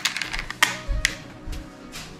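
Plastic craft beads clicking against each other and the stone countertop as a bead necklace is handled: a scattering of sharp clicks with a couple of dull bumps.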